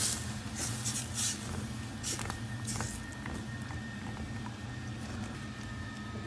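Milk-and-cream sauce sizzling and bubbling in a hot pan while a silicone spatula stirs it, with short bursts of hiss and a few soft scrapes and clicks. A steady low hum runs underneath.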